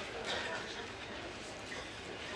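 Quiet theatre ambience with faint voices murmuring.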